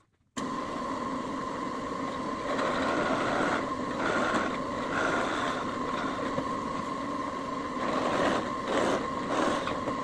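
Drill press motor running steadily while its bit bores tuner holes in a Cuban mahogany bass headstock. The cutting gets louder about two and a half seconds in and again near the end as the bit bites into the wood.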